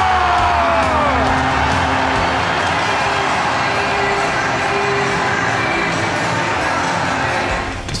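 Ice hockey arena crowd cheering after an overtime winning goal, with a commentator's long shout falling in pitch and ending about a second in.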